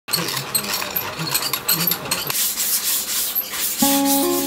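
Dry rustling and scraping of shola pith strips and shavings being handled and cut by hand, an irregular run of scrapes and light clicks. Just before the end, a plucked string instrument starts playing.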